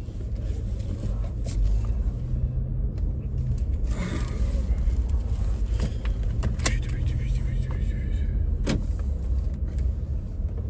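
Car engine running, heard from inside the cabin as a steady low rumble and hum, with a few sharp clicks about 1.5, 4, 6.7 and 8.7 seconds in.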